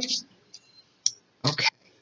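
Two brief clicks, the second sharper, about half a second apart, followed by a woman saying "okay".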